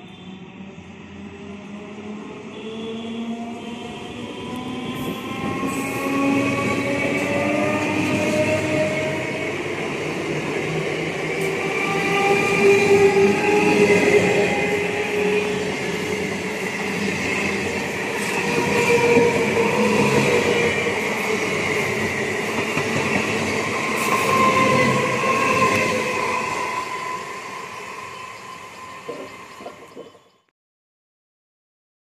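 Conventional EMU local train running past close by. Its traction motors whine in several tones that rise in pitch over the first several seconds as it gathers speed, over the rumble and clatter of wheels on the track. The sound builds from a distance, stays loud, then eases slightly before it cuts off.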